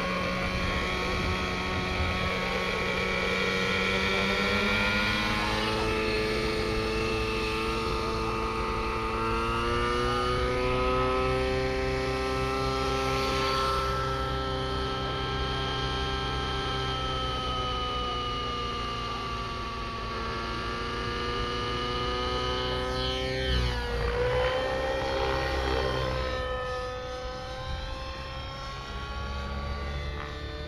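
Nitro-engined radio-controlled helicopter running, its small glow engine whining with the rotor. The pitch climbs steadily through the first ten seconds or so as it spools up, holds, then swoops sharply down and back up about three-quarters of the way through as it flies.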